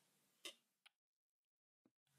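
Near silence, broken by a faint short click about half a second in and two fainter ticks after it.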